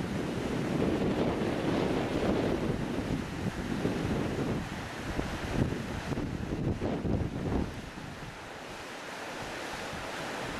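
Wind buffeting the microphone in irregular gusts over a steady rushing hiss of flowing water; the buffeting dies away about eight seconds in, leaving the even water noise.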